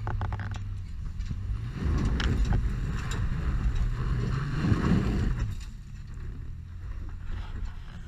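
Four-wheel drive's engine working hard under load as it climbs a steep rock face, its tyres spinning and scrabbling on loose rock. The sound builds from about two seconds in and stays loud until the revs drop away at about five and a half seconds.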